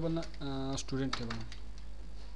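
Computer keyboard keys tapped a few times as a short word is typed, with a man's voice speaking briefly in the middle, over a steady low hum.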